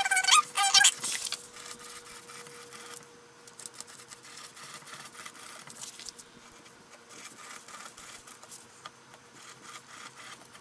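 Pen nib squeaking on acrylic-painted paper as circles are drawn, high squeaks in the first second, then faint scratching of the nib over the paint for the rest.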